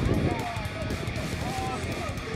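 Faint voices over background music, with a low steady rumble underneath.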